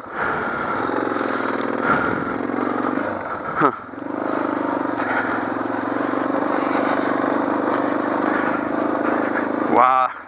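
Suzuki DR650's single-cylinder four-stroke engine running under load as the motorcycle climbs a rocky trail, with a brief dip in engine sound about four seconds in.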